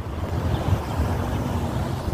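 Steady low outdoor rumble with no clear events, background noise of wind buffeting the phone microphone and road traffic.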